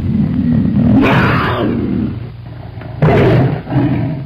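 A big cat's roar played as a sound effect, loud and rumbling, with a louder surge about a second in and another about three seconds in.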